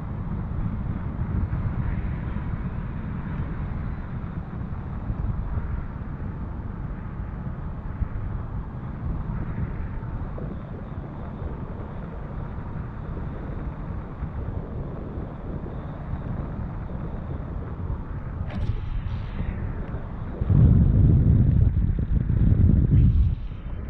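Wind rushing over the action camera's microphone in paraglider flight: a steady low rumble that grows much louder for the last second and a half.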